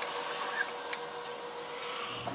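Faint steady hiss with a thin steady hum, and a small tick just before a second in: background room tone, with no clear sound of the work itself.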